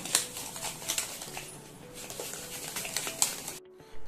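Irregular light clicks and knocks of plastic bottles and utensils being handled on a kitchen counter. The sound cuts off abruptly near the end.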